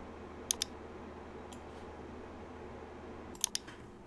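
Computer mouse clicks: a quick pair about half a second in and a short cluster near the end, faint over a low steady hum.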